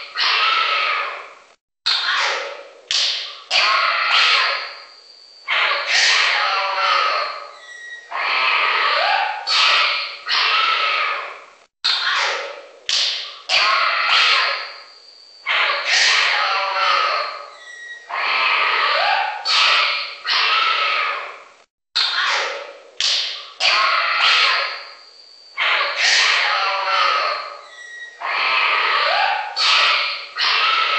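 Generated wildlife sound effect of exotic animal calls: clusters of short, noisy cries and calls. The same sequence loops about every ten seconds, three times over, with a brief gap before each repeat.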